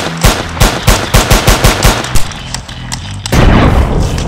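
Gunshot sound effects added to a shootout staged with toy guns: a rapid string of about ten shots in the first two seconds, then a longer, louder blast near the end.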